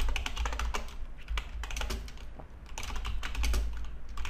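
Typing on a computer keyboard: a rapid run of keystroke clicks, with a brief lull a little past the midpoint.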